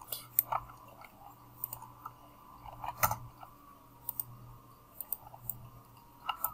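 Scattered clicks of a computer mouse and keyboard keys, one sharper click about three seconds in, over a faint steady hum.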